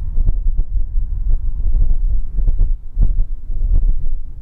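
Wind buffeting the microphone: a loud, deep rumble with irregular thumps, several of them close together in the second half.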